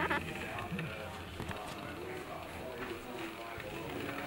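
Faint, indistinct voices murmuring in a room, with a short click at the very start.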